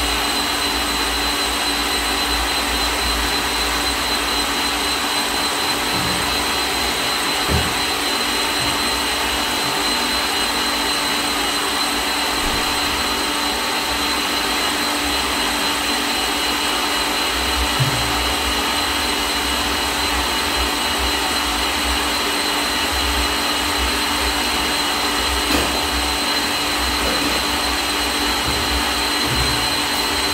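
Electric stand mixer running steadily, beating chocolate cake batter, a constant motor hum and whine. A few light knocks sound now and then.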